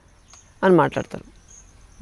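Insects chirping faintly in thin high-pitched pulses, with one short spoken word from a man a little over half a second in.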